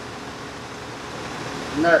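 Steady low background hiss of room noise with no tool or fastener sounds, and a man saying "nut" near the end.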